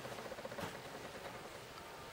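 Quiet room tone with faint, light handling noise and one soft tap about half a second in.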